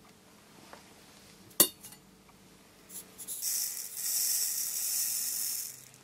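A sharp metallic click, then a steady high hiss for about two and a half seconds as weighed smokeless rifle powder is poured from a scale pan through a plastic funnel into a brass cartridge case.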